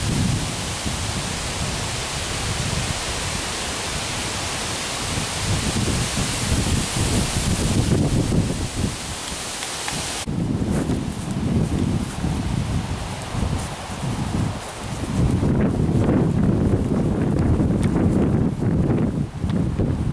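Wind blowing through leafy trees and buffeting the microphone. In the first half it is a steady, even hiss. After a sudden change about halfway, the hiss drops away and uneven, gusty rumbling of wind on the mic takes over.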